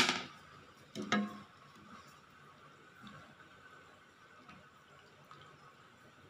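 A sharp knock, then a ringing metallic clink about a second in, as a serving spoon strikes the pot of fish-head curry; after that only a faint steady hum.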